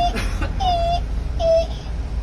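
A vehicle's electronic warning beeper sounding short, repeated high tones a little under a second apart, heard inside the cab while the vehicle is manoeuvred, over a low engine rumble. A brief rattle comes just after the start.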